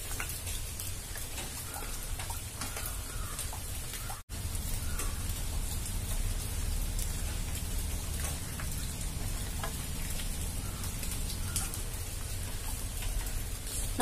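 Steady background hiss with faint crackle and a low rumble, no voice; it cuts out for an instant about four seconds in.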